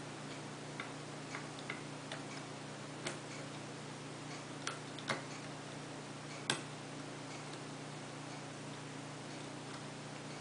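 Metal lock pick clicking against the pins of a Corbin small-format interchangeable core during single-pin picking: a handful of light, irregular ticks, the sharpest about six and a half seconds in, over a steady low hum.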